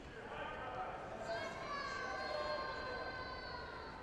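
Long drawn-out shouting from spectators in the arena: high voices held for about three seconds, swelling about a second in and fading near the end.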